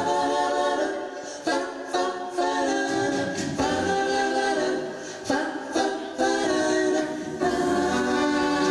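A mixed vocal group singing live in close multi-part harmony, several voices holding and moving chords together. The singing is broken by a few sharp percussive accents.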